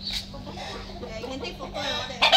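A large domestic rooster clucking, growing louder near the end.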